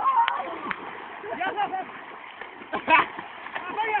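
Water splashing as several people wade and thrash about in waist-deep river water, with shouting voices over it at intervals.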